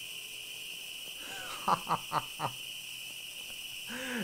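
A man laughing briefly, four short 'ha' pulses in quick succession about halfway through, over a steady high-pitched hiss.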